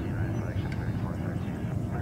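Jet airliner's engines running at takeoff power, a steady low rumble, with indistinct voices in the background.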